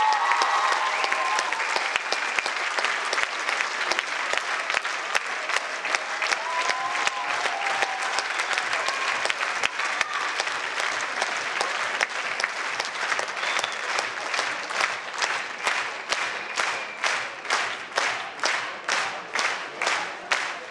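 Audience applause, which in the second half settles into rhythmic clapping in unison, the beat growing more distinct toward the end.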